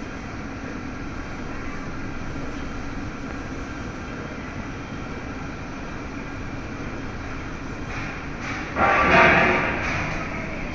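Electro-hydraulic mobile scissor lift moving its platform, a steady mechanical hum throughout. About nine seconds in, a louder rushing burst rises and fades over about a second.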